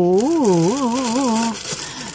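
A woman's voice singing a short wordless tune, the pitch rising and falling and then wavering quickly before stopping about a second and a half in.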